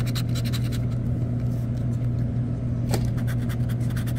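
A scratch-off lottery ticket being scratched with the tip of a pen: rapid, repeated scraping strokes over a steady low hum, with one sharper click about three seconds in.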